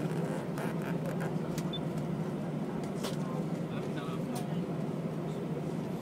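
Jet airliner's engines at take-off power heard inside the cabin during the take-off roll: a steady, even rumbling noise, with scattered sharp clicks and rattles.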